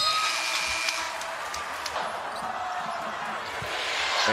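Arena crowd noise during live basketball play, with a basketball bouncing on the hardwood court and a few short high squeaks in the first second.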